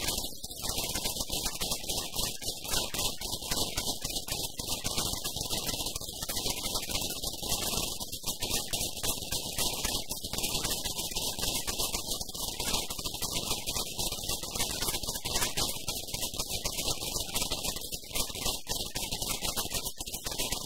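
Crowd applauding, a dense, steady patter of many hands clapping.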